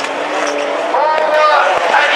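Rallycross cars racing in a close pack, engines running hard, with a rise in engine pitch and loudness about a second in as they accelerate.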